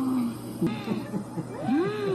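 Several short overlapping cries that rise and then fall in pitch, like animal calls or meows, over a low steady hum, from the soundtrack of a TikTok clip.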